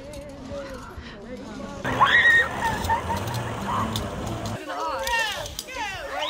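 People's voices calling out and talking, indistinct, with a louder exclamation about two seconds in and more voices near the end.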